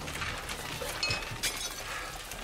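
Irregular clinks and rattles of glass jars and crockery as a swarm of rats scrambles over a kitchen counter, knocking things about.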